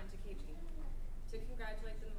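A woman speaking, in short phrases over a steady low room hum.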